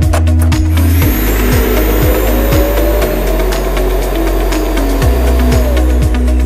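Neabot self-emptying base station's suction motor running for about five seconds, pulling dirt out of the docked robot vacuum into its bin: a loud rushing noise with a whine that rises slowly, starting about a second in and cutting off shortly before the end, over background music.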